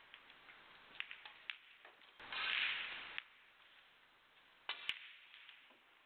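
Sharp clicks of snooker balls: single clicks early on, then a close pair near the end, a cue tip striking the cue ball and the cue ball hitting another ball. The loudest sound is a burst of noise about two seconds in that lasts about a second.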